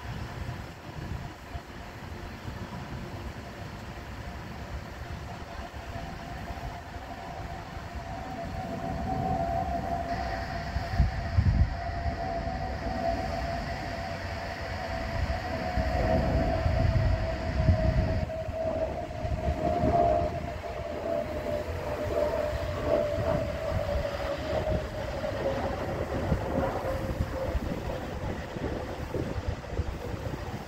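Jet engines of a United Airbus A320-232 (IAE V2500 turbofans) on approach overhead: a steady whine over a low rumble that grows louder about eight seconds in and slowly falls in pitch as the airliner passes. Gusts of wind buffet the microphone.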